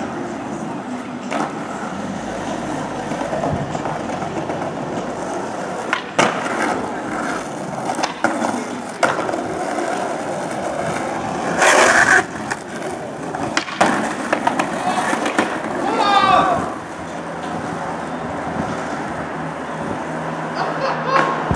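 Skateboard wheels rolling on an asphalt road, with several sharp clacks of the board and a longer, louder burst of noise about twelve seconds in.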